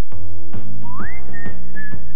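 Commercial background music: a whistled tune that slides up about a second in and holds a high note, over a low steady bass with an even beat about twice a second. It starts right where the previous music cuts off.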